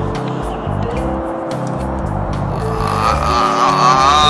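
Background music with a steady, repeating bass beat and held tones, with a short laugh at the start. A wavering high tone comes in near the end.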